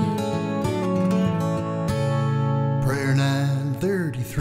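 Instrumental break of a folk song: a fingerpicked acoustic guitar plays sustained, ringing notes. A wavering higher line joins about three seconds in.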